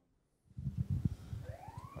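Knocks and rubbing from a handheld microphone being handled, then a siren starting up about halfway through, its wail rising in pitch and holding high.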